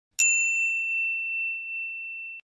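A single bright bell ding, a notification-chime sound effect. It is struck once just after the start and rings as one clear high tone, slowly fading.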